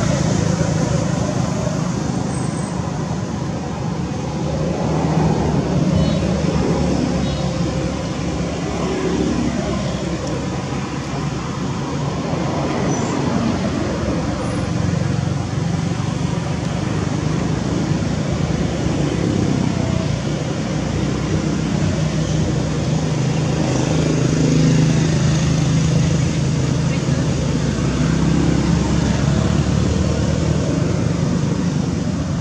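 A constant loud rumble like road traffic, with indistinct voices running through it.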